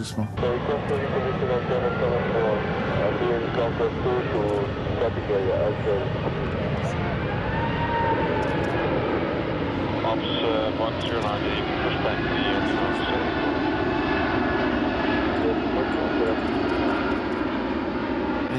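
Airbus A380 airliner flying a slow, low-power pass overhead: a steady, continuous jet roar and rumble from its four Rolls-Royce Trent 900 turbofans, with voices faint underneath.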